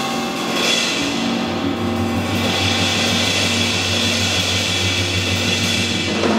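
Live acoustic jazz piano trio playing: grand piano, upright double bass and drum kit, with a steady wash of cymbals. A low note is held from about a second and a half in.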